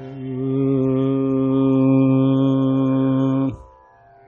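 A male voice chanting one long, deep, steady note at the opening of a Carnatic song. It swells in, holds, and stops abruptly about three and a half seconds in.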